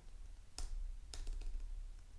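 Typing on a computer keyboard: a few separate keystrokes about half a second apart as a terminal command is entered.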